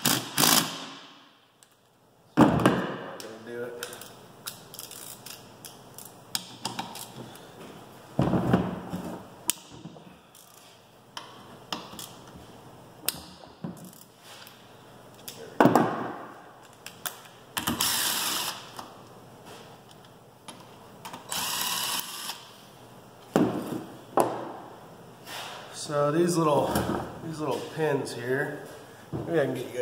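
Cordless drill-driver backing out 8 mm triple-square bolts from a gearbox's fifth-gear linkage in several bursts of about a second each. Between them come the clicks of a hand ratchet and the knock of tools handled on the bench.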